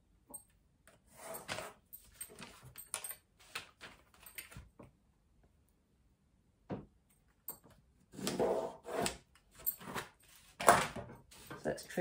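A paper sewing pattern and a clear plastic drafting ruler being handled on a wooden tabletop: paper rustling, a pencil drawing along the ruler's edge, and light knocks and scrapes as the ruler is moved, with the loudest knock near the end.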